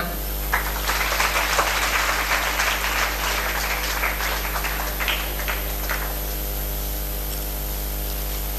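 Audience applauding. It starts about half a second in and dies away around six seconds, over a steady electrical hum.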